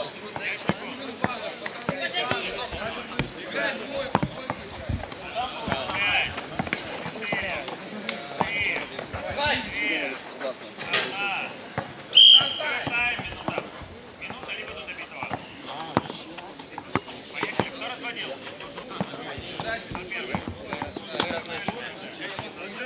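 Streetball game sounds: a basketball bouncing on the court amid players' and onlookers' voices and shouts, with a brief, loud high-pitched sound about halfway through.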